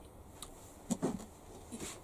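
A quiet pause between a woman's sentences: low room tone in a small wooden room, with a few faint clicks and a brief soft sound about a second in.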